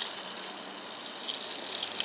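A Lego remote-control car driving on concrete: its small electric motors and plastic gears whirring, with the wheels rolling on the rough pavement, heard as a steady noisy hiss.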